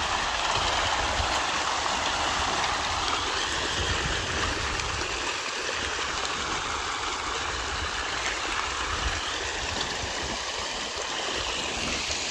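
A large mass of pond fish thrashing and splashing at the water's surface in a feeding frenzy, making a continuous churning splash.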